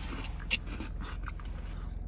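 Faint mouth sounds of someone tasting a spoonful of soft-serve ice cream, with a small smack about half a second in, over the low steady hum of a closed car cabin.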